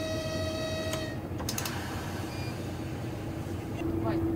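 A diesel locomotive's horn sounding one steady note, heard from inside the cab over the engine's low running rumble; the note cuts off about a second in, a few clicks follow, and a lower steady tone starts near the end.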